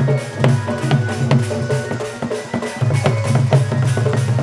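Folk drum music: a large two-headed barrel drum (dhol) beaten in a fast rhythm of sharp strokes over a steady low pulse, with held pitched melody tones above. The low pulse drops out briefly a little past the middle.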